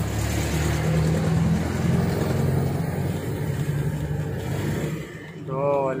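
A motor vehicle's engine running close by: a steady low rumble that fades away about five seconds in.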